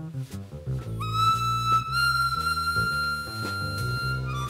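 Instrumental music: a harmonica holds one long high note from about a second in, over a low accompaniment of repeated chords.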